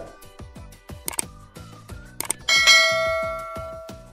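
Sound effects of a subscribe-button animation over background music: two short clicks about a second apart, then a bright bell ding about two and a half seconds in that rings and fades away.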